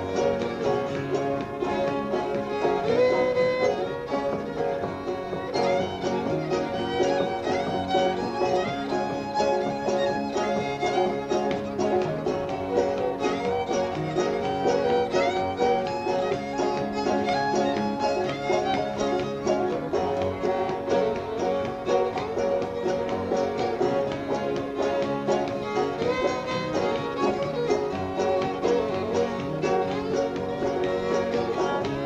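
Old-time fiddle tune in the key of G, the fiddle tuned down for it, leading with a fast melody over banjo and guitar accompaniment.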